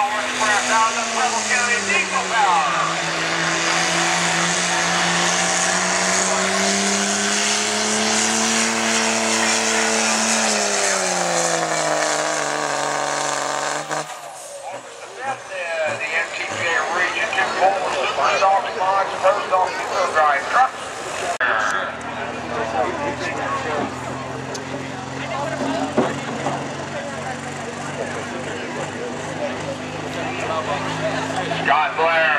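Dodge Ram's diesel engine under full load pulling a sled. Its pitch sags about two seconds in, climbs again, then falls away and cuts off sharply about halfway through. In the second half another diesel truck idles steadily under crowd and PA voices.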